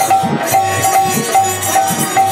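Devotional kirtan music: a harmonium holding steady reed tones under a quick, even beat of small brass hand cymbals and a hand drum, with a man singing.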